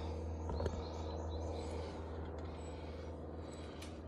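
Steady low rumble of outdoor background noise, with a few faint clicks and rustles of lemon-tree branches being handled and faint bird chirps.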